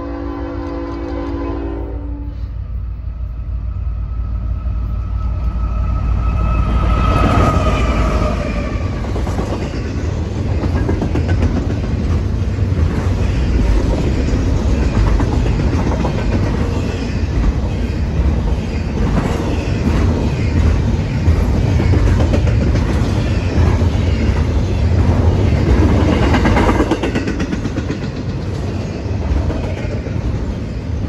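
A freight locomotive's horn sounds a chord and cuts off about two seconds in. Then a double-stack intermodal freight train approaches and passes close by: the locomotives' rumble builds to a peak about seven seconds in, with a whine that drops in pitch as they pass. After that comes the steady rumble and rapid clacking of the container cars' wheels rolling by.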